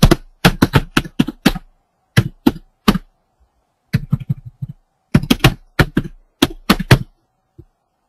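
Typing on a computer keyboard: quick runs of keystrokes with short pauses between them, entering a command at a command prompt and correcting a mistyped letter.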